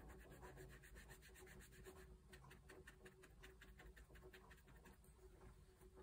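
Faint, quick, scratchy strokes of a small ink blending brush dabbed and rubbed over fussy-cut paper flower pieces. The strokes are close-packed at several a second for the first half and sparser after.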